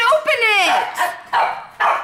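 A dog barking several times, agitated, with one long falling yelp near the start.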